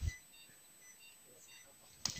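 Several faint, short electronic beeps from cath-lab equipment over quiet room tone.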